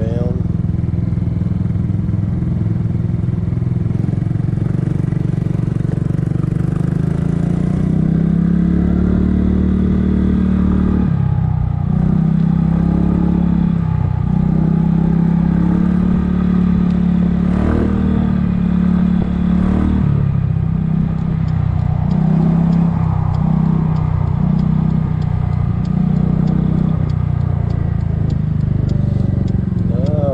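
2007 Kymco 250cc scooter's single-cylinder four-stroke engine running under way, its pitch rising about eight to eleven seconds in as it speeds up, then wavering up and down with the throttle, over wind and road noise.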